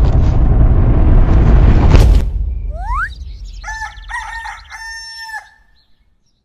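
A loud, harsh rumbling noise for about the first two seconds, cut off by a sharp crack. Then a rooster crows, a call of several notes with the last one held, which stops shortly before the end.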